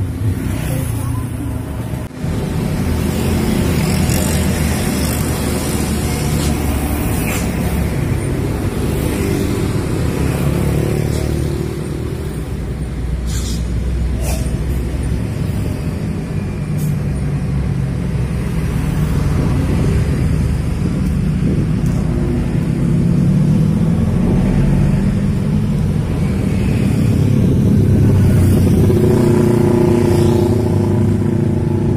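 Road traffic passing close by: cars, trucks and motorcycles, their engines swelling and fading as each goes past, loudest near the end.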